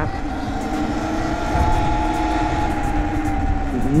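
Sur Ron electric dirt bike under way on tarmac: a steady motor and drivetrain whine, easing slightly lower in pitch, over low wind and tyre rumble on the microphone.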